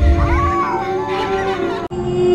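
Title-sequence sound effects: a drawn-out wailing cry that rises and then falls in pitch, over sustained eerie music tones, with the sound cutting out briefly near the end.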